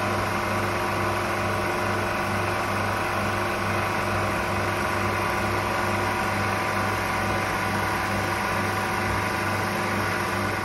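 Refrigerant recovery machine running steadily with a droning mechanical hum, pumping R22 out of the air-conditioning system into a recovery cylinder.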